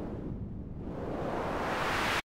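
White noise from the Sytrus synth, stereo from two-voice unison, played through its low-pass state variable filter. The hiss darkens to a muffled rush by about half a second in, then brightens steadily again as the filter cutoff is swept back up.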